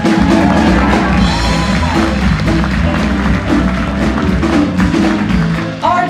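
Live band playing an upbeat instrumental passage: a drum kit keeps a steady beat under a moving electric bass line and guitar.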